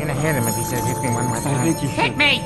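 Cartoon characters' voices over background music, without clear words, with one held high note in the music.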